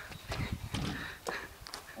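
A few light, irregular knocks or taps on a glass sliding door.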